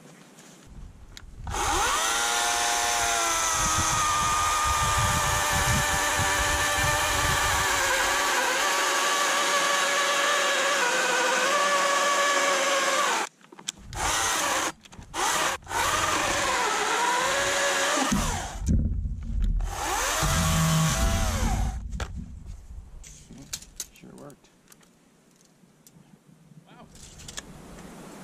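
Oregon CS300 battery-powered chainsaw cutting a log on a nearly flat battery. The motor whirs up about a second in and drops in pitch as the chain bites, then runs steadily. Around halfway it cuts out and restarts several times, then runs on briefly and stops, followed by some low knocks.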